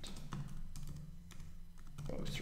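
Typing on a computer keyboard: irregular, separate keystrokes, a few per second, over a low steady hum.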